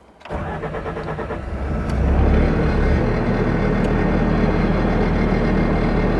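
Bobcat skid-steer loader's diesel engine starting: a short crank, catching about two seconds in with a brief rise in speed, then settling into a steady idle.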